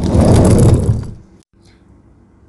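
A loud rattling, scraping noise lasting about a second, followed by a brief dropout to silence.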